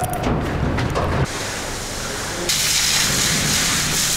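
Cattle jostling in a holding pen, followed by a steady hiss of water spray showering the cattle, louder from about two and a half seconds in.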